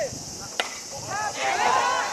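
A single sharp crack of a baseball bat hitting a hardball about half a second in, followed by loud shouting voices.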